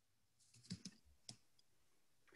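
Near silence broken by a few faint clicks from computer use, a quick cluster a little before the middle and a single one just after it.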